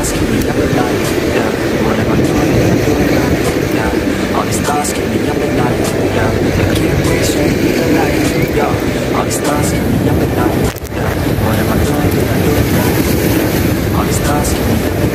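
Steady, loud outdoor noise of wind on the microphone and sea water washing against breakwater rocks, with muffled voices in it. The noise dips briefly about eleven seconds in.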